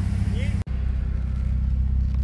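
Steady low drone of idling car engines. It breaks off for an instant about half a second in, then a similar low engine drone goes on.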